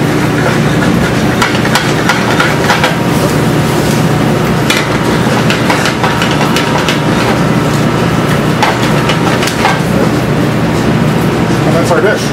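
Butter sauce and shrimp sizzling in a sauté pan over a gas burner, over a steady kitchen hum, with scattered clicks and knocks as the pan is worked on the burner grate.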